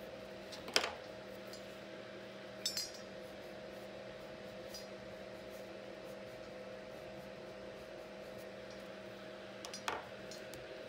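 A few light clicks of wax crayons being set down on and picked up from a wooden table, the loudest about a second in and another just before the end. A steady low hum runs underneath.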